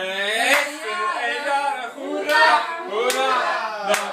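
A group of people singing a birthday song together without accompaniment, with a few sharp taps through it.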